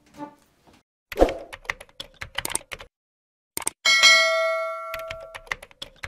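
Subscribe-button animation sound effects: a quick run of clicks like typing or mouse clicks, then a bell ding about four seconds in that rings on for over a second, and a few more clicks near the end.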